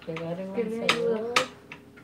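Kitchen knife chopping vegetables, about four sharp knocks as the blade hits the surface underneath, with a woman's voice over the first part.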